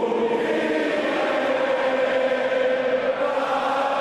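Many voices singing together in long, held notes, chant-like, as a choir or a crowd does.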